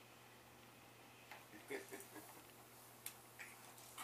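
Mostly near silence, with a few faint clicks and taps from the plastic toys on a baby's activity jumper, starting about a second in, and a brief soft vocal sound near the middle.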